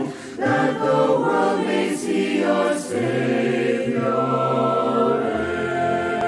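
A choir singing a slow, anthem-like song with musical accompaniment, holding long notes; a new, lower chord comes in about halfway through.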